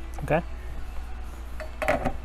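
Two short metallic clinks about a second and a half apart, the second louder, from small metal tools and clips being handled on a workbench, over a low steady hum.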